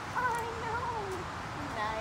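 A lab–boxer mix dog whining: one long, wavering high-pitched whine lasting about a second, then shorter ones near the end.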